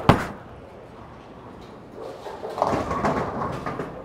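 A bowling ball set down onto the wooden lane with a sharp thud at release, rolling down the lane, then about two and a half seconds in the clatter of pins being struck, lasting about a second.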